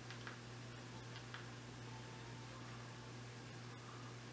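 Two faint clicks of a Fire TV remote's direction button, about a second apart, over a steady low hum.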